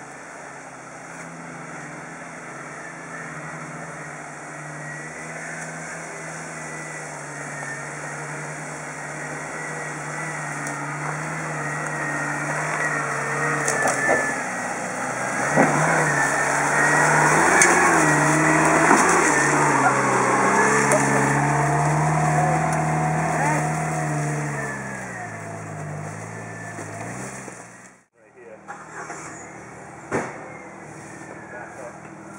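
Jeep Wrangler TJ engine pulling steadily under load as the Jeep crawls up a steep, rocky hill, growing louder as it nears, with a couple of sharp knocks midway. The engine note falls near the end, then the sound cuts off abruptly.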